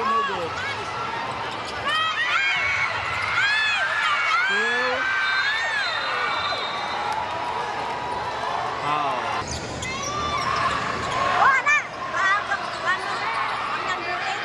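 Basketball in play on a hardwood court: sneakers squeaking in many short, arched chirps, the ball bouncing, and the gym crowd's chatter beneath. The sharpest, loudest hits come about eleven to thirteen seconds in.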